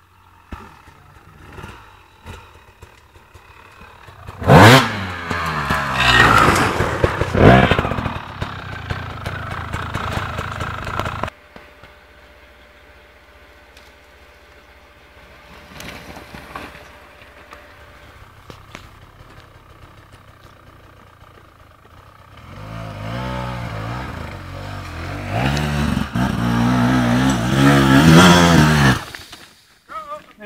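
Enduro dirt-bike engines revving hard on a steep climb: a loud spell of throttle blips from about four seconds in that stops abruptly, a quieter stretch with a faint engine, then a second bike revving hard near the end before cutting off.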